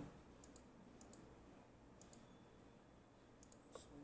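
Computer mouse buttons clicking: several short, sharp clicks, mostly in close pairs, over faint room tone.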